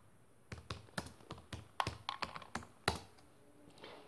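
Typing on a computer keyboard: a quick, uneven run of about fifteen faint key clicks, starting about half a second in and stopping near the three-second mark.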